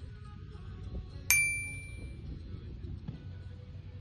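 A single bright bell-like ding about a second in, ringing out for about a second: the notification-bell sound effect of a subscribe-button overlay, over a low rumble.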